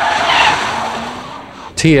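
Tyres of a 2004 Acura TL skidding on wet pavement as the car slides through a hard turn, a rushing screech that fades out over the second half.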